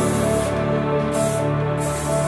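Aerosol hairspray can spraying in three short hissing bursts over soft background music.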